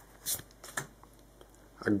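Pokémon trading cards sliding against each other as the front card is moved off the hand-held stack: two brief papery swishes, the first louder.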